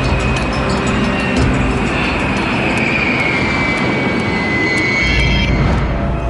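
Jet airliner engines running as the planes taxi, a steady rush with a high whine that drops slightly in pitch midway.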